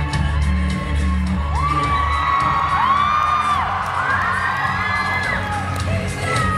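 Loud recorded music played over a hall sound system, with a heavy bass beat in the first couple of seconds, while audience members let out several long, high whoops and cheer.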